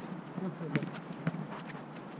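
Football match play on artificial turf: players' quick footfalls with two sharper knocks, about half a second apart, from the ball being kicked, under faint distant shouts.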